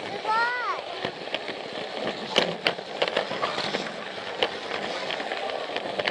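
Plarail toy train running along blue plastic track, heard close up from the camera on the train: a steady rattling with irregular sharp clicks from its wheels and track joints. Voices of people talking sound around it.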